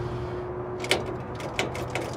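A few sharp clicks over a low steady hum as the key is turned on a 1953 Pontiac Chieftain and the engine fails to crank or start. The cause is a battery that has given out.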